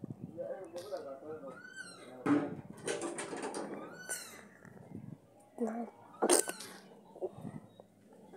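Budgerigar chirping and chattering in short scattered bursts, with a quick run of high falling chirps about two seconds in and a few short calls near the end.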